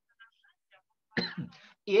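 A person briefly clears their throat a little over a second in, in a pause between sentences of speech.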